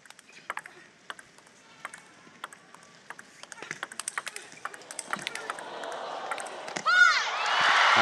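Table tennis rally: the celluloid-type ball clicking off the bats and the table, the hits coming quicker in the second half. About seven seconds in, a loud shout, then crowd cheering and applause as the point is won.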